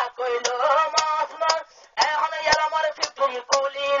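A man singing a Rohingya tarana in a heavily processed voice, over a regular percussive beat of about two strikes a second. The singing breaks off briefly a little before the two-second mark.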